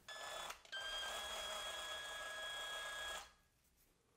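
Small electric hobby drill running with a steady high whine as it drills out the rivets holding a diecast Matchbox van's base. A short burst is followed by a brief break, then a longer run that stops about three seconds in.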